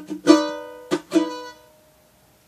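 Ukulele strummed: four chord strums in the first second and a bit, the last one left to ring out and fade away.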